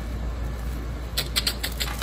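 Sheer sachets of dried-flower potpourri rustling and crackling as they are handled, a quick run of crisp rustles in the second half.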